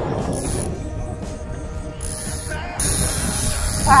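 A fishing reel ratcheting while a fish is fought on a bent rod, over a steady low rumble of wind and boat noise.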